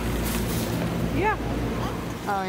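Steady low hum of a large warehouse store's background, with a child's short vocal sound rising and falling in pitch a little over a second in.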